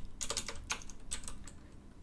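Typing on a computer keyboard: a quick run of separate keystrokes in the first second and a half, thinning out near the end.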